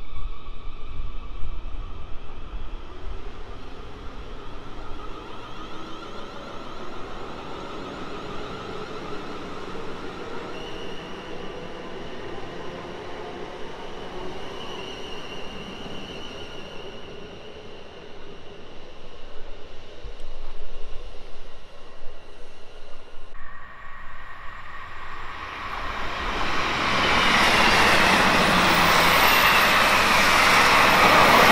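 A South Western Railway Class 450 Desiro electric multiple unit pulls out of the platform with the whine of its traction motors, which shift in pitch as it moves off. Near the end a second train comes through at speed with a loud, building rush of wheel and air noise.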